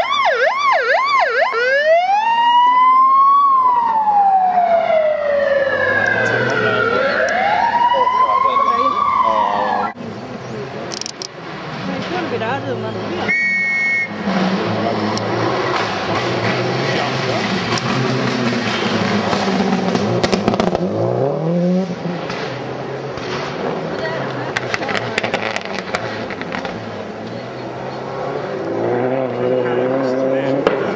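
Siren on a Land Rover course car: a fast yelp, then slow rising and falling wails, which cut off sharply about ten seconds in. After that, people talking and a short beep-like tone.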